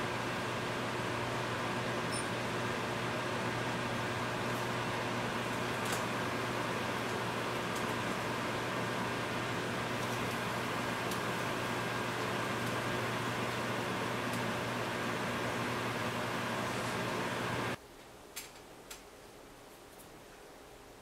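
Steady hum and hiss of a running machine, fan-like, with a few constant tones, cutting off suddenly near the end; a couple of faint clicks follow.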